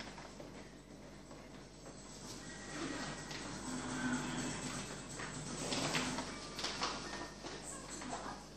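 Faint clicks and light knocks of hands handling a CPU waterblock and its mounting screws, bunched in the second half. A brief low hum is also heard twice in the middle.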